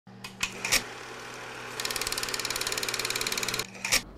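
Intro sound effect: a few sharp clicks over a low steady hum, then a fast, even mechanical clatter for about two seconds, ending with a click.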